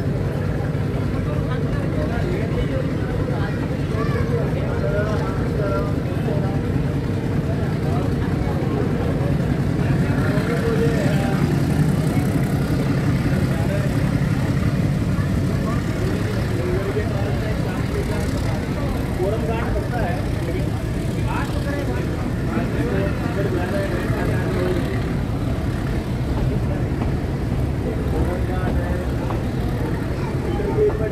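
Meter-gauge passenger train pulling away and picking up speed, heard from a coach window: the YDM4 diesel locomotive's engine working under acceleration ahead, mixed with the steady running rumble of the coaches. The sound holds steady throughout and swells slightly about ten seconds in.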